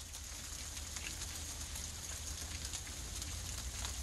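Faint steady outdoor ambience in a snowy yard: an even hiss with a low rumble and scattered light ticks.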